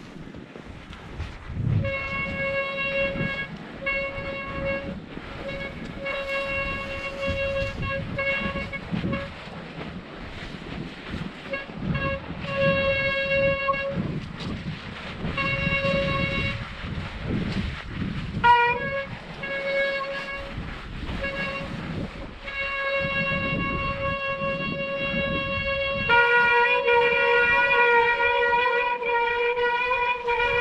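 Disc brakes on a Specialized Turbo Levo e-mountain bike squealing in one steady, fairly high tone, cutting in and out in bursts of about a second as the brakes are applied and released on a snowy descent. The squeal runs over the low rumble of tyres on snow. Near the end it settles slightly lower in pitch and holds without a break.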